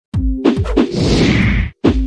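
Intro music sting built from sound effects: three sharp hits with deep booms in quick succession, then a hissing whoosh that cuts off suddenly, followed by another hit near the end.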